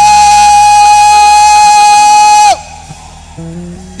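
Live Niger Delta-style gospel music: a long held high note slides down and breaks off about two and a half seconds in. A quieter stretch of accompaniment with a few low instrumental notes follows.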